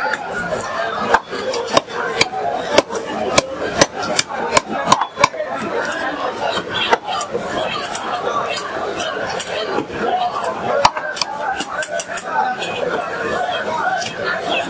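Large steel blade cutting through a big catla fish, making sharp, irregular knocks and clicks as flesh and bone are chopped and slid against the metal. Steady market chatter runs underneath.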